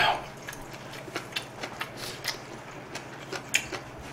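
Faint, scattered mouth clicks and lip smacks, close to the microphone, after eating very spicy ramen. A brief louder vocal sound tails off at the very start.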